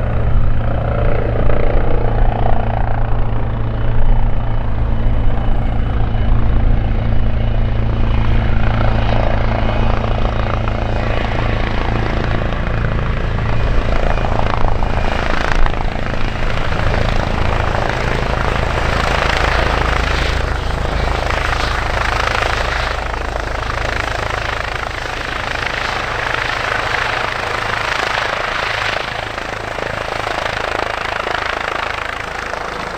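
Airbus Helicopters EC135 P2 hovering low and air-taxiing close by: its twin turboshaft engines and its rotors, with a steady low rotor drone under turbine and Fenestron tail-rotor whine. From about ten seconds in the higher, rougher rotor and turbine noise grows stronger while the low drone eases slightly.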